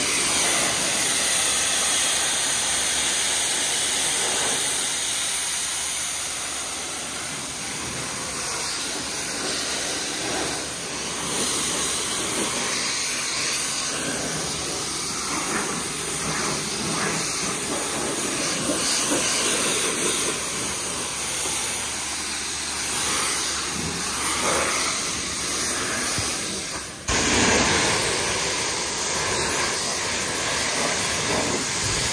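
High-pressure washer lance spraying water onto a car's body panels: a steady, dense hiss with spattering. It breaks off for an instant near the end and comes back louder.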